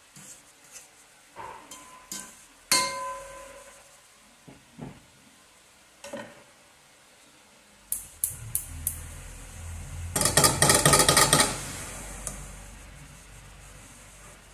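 Pot lid set down on a cooking pot with a sharp clink that rings briefly, after light stirring taps. Later a gas stove's spark igniter clicks a few times, then clicks rapidly and loudly for over a second as a burner is lit, with a low rumble of gas flame underneath.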